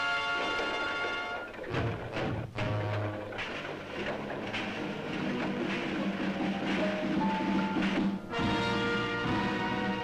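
Orchestral cartoon score: a held chord, then a quick run of drum hits about two seconds in, a busy orchestral passage, and a new sustained chord near the end.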